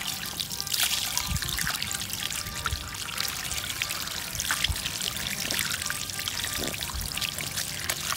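Water pouring and splashing from a running stream over cut eel pieces as a hand rubs them clean on a wooden chopping board, with a few soft knocks of the pieces being handled. Background music plays underneath.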